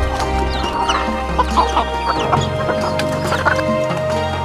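Chickens, hens and chicks, calling in short clucks and peeps over background music with held notes.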